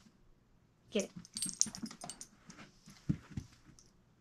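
A dog's metal chain collar jingling with quick clicks as the dog moves off to retrieve, then two soft thumps about three seconds in.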